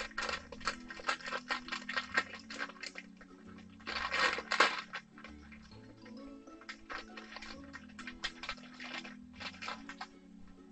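Clear plastic packaging bag crinkling and crackling as it is handled and opened, with a louder tearing rustle about four seconds in. Quiet background music runs underneath.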